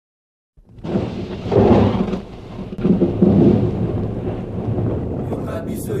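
Thunder rumbling over steady rain, starting about half a second in, with two louder rolls of thunder.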